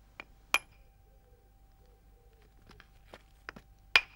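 Sharp knocks of a wooden billet striking a large flint core as flakes are struck off to shape it into a blade core. Two strikes come in the first half second, the second of them hard and briefly ringing; after a pause, a quick run of lighter taps ends in another hard, ringing strike.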